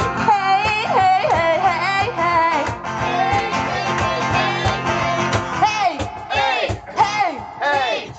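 A woman singing an upbeat pop song into a microphone, live, over strummed acoustic guitar and cajón.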